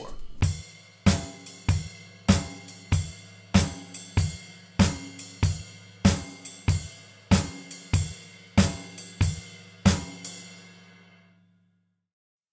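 Drum kit playing a jazz swing shuffle, a swung triplet pattern on the cymbal over regular drum beats at a medium tempo. The playing stops about ten seconds in and the cymbal rings out and fades.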